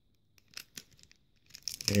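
Foil Pokémon booster pack wrapper crinkling with a few faint crackles, then tearing open in a quick run of crackles near the end.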